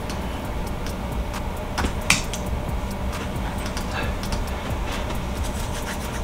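Computer mouse clicking: scattered light clicks, the loudest about two seconds in, over a steady low hum.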